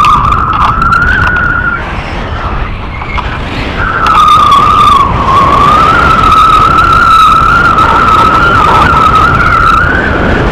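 Loud wind rushing and buffeting over an action camera's microphone in paragliding flight, with a high whistling tone that wavers slightly in pitch, drops out about two seconds in and comes back about two seconds later.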